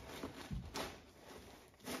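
Faint rustling of shredded paper filler and tissue paper as items are pushed down into the side of a plastic basket, with a soft bump about half a second in.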